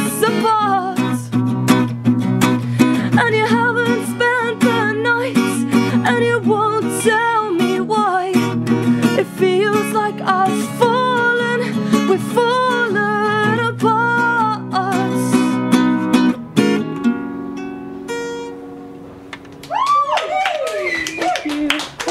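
Live female singing with a strummed acoustic guitar, ending about two-thirds of the way through on a final chord that rings out and fades. A voice comes in near the end.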